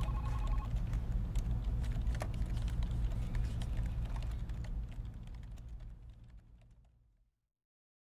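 Scattered typing clicks on a computer keyboard over a steady low hum, with a quick run of beeps at the very start. The sound fades out and is gone about seven seconds in.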